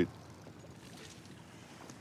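Faint, steady outdoor ambience of open water: light wind and sea with no distinct events.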